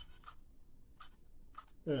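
A few faint, short clicks and scratchy rustles of a plastic phone holder being turned over in the hand.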